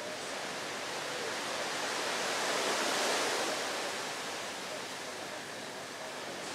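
Sea surf washing ashore, a rushing hiss that swells to a peak about halfway through and then eases off.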